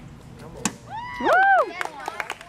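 A dog yipping: two high whines that rise and fall in pitch about a second in, just after a single sharp knock.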